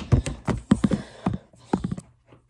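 Handling noise from a phone camera being grabbed: a quick, irregular run of knocks and taps as a hand bumps and fumbles the phone.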